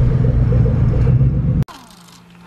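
Steady low drone of a pickup truck's engine and road noise heard inside the cab while driving slowly. It cuts off abruptly about one and a half seconds in, leaving only a faint steady hum.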